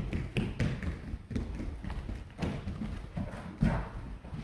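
Children's footsteps, a quick irregular patter of thumps and taps as they hurry off the platform, with one louder thump near the end.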